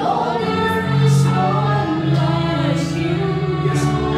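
A woman singing a gospel song through a microphone and PA, accompanied by sustained chords on an electronic keyboard.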